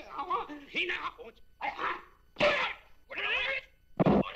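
Men's voices giving short wordless shouts and exclamations in about five bursts, the loudest about halfway through.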